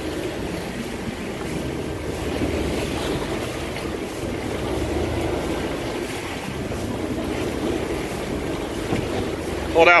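Steady rush of wind on the microphone over the wash of sea water around a boat at rest on open water.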